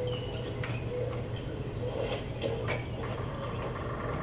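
Scattered faint bird chirps and a few sharp clicks from woodland footage, heard through a hall's speakers over a steady low hum.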